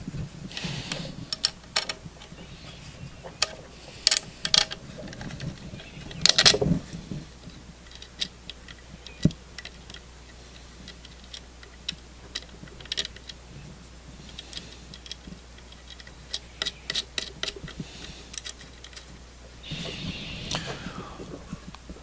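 Metal drive parts being handled and fitted together by hand: scattered small clicks and knocks as the worm drive unit, shaft and bearing block are put together, with brief handling rustles.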